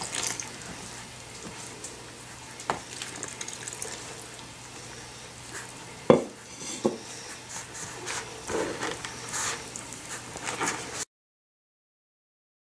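Hand mixing water into a heap of cornstarch in a plastic bowl: soft scraping and squishing, with a few light knocks against the bowl and scratchy rustling later on. The sound cuts off abruptly a second or so before the end.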